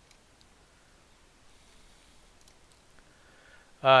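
A few faint computer mouse clicks over quiet room tone: one about half a second in and a small cluster around two and a half seconds in.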